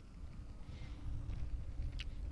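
Faint low rumble with a faint steady hum from an electric unicycle with a 16-inch tire rolling along a concrete path.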